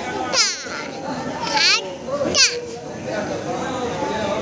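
Goats bleating: three short, wavering calls about a second apart, over the chatter of a crowd.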